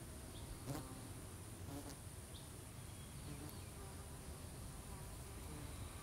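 Faint, steady buzzing of flying insects, with a few soft clicks and a few short, faint high chirps.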